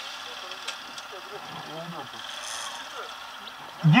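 Yamaha NMAX 155 scooter's single-cylinder engine idling quietly and steadily at a standstill, with faint voices nearby.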